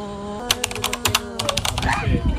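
Smartphone camera shutter firing in a rapid burst, about ten clicks a second for over a second, over a steady low hum.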